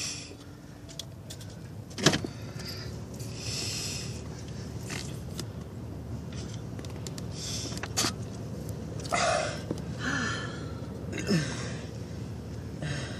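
Fabric rustling against a handheld phone's microphone in short bursts, among scattered clicks and knocks. A single sharp click about two seconds in is the loudest sound.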